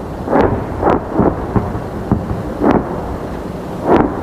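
Distant artillery fire: several booms over a continuous low rumble. The liaison takes it for incoming Russian shelling rather than outgoing Ukrainian fire.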